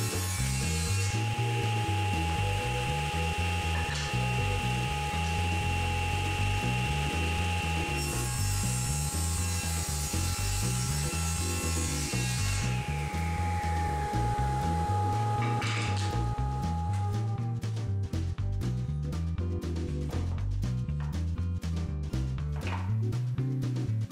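SawStop table saw running and ripping a bevel along a board's edge, with the blade tilted to 15 degrees, over background music. About 13 seconds in the saw is switched off and the blade winds down with a falling whine. The music plays alone for the last several seconds.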